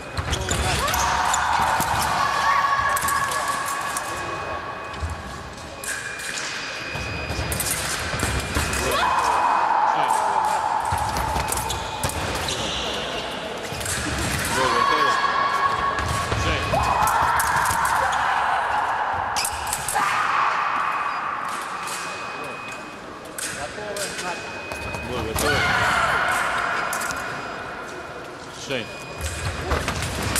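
Fencing bout: repeated thuds of fencers' feet on the piste and sharp clicks of blades, with voices calling out at intervals.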